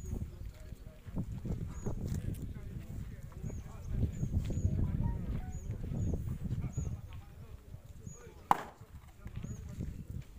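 Gusty wind rumbling on the microphone, with faint high chirps repeating about once a second and a few sharp cracks, the loudest one near the end.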